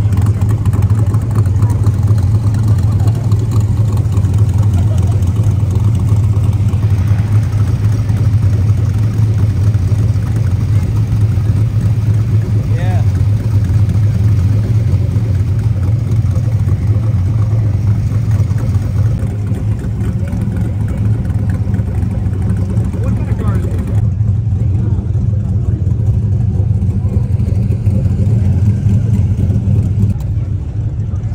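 Car engines running with a steady low rumble amid crowd chatter, across several cuts between clips.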